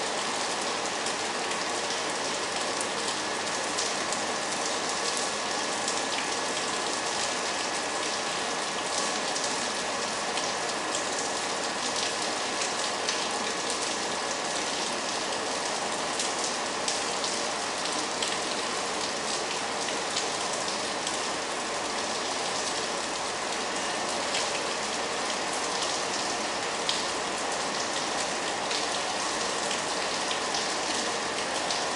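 Steady rain falling on the station's platform canopy and track, a continuous hiss flecked with many small drip ticks, with a faint steady tone underneath.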